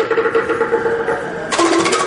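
Live African percussion music. Quick, even wooden strikes fade in the first half second, then about one and a half seconds in a gourd-resonator xylophone comes in with a fast run of notes.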